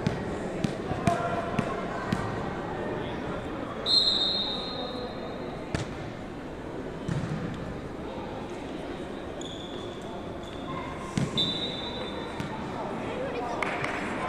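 Ecuavoley ball thuds on the hands and the wooden court of an indoor sports hall, a few sharp impacts with reverberation over the hall's murmur of voices. Three high, level tones about a second long each sound in the middle and late part.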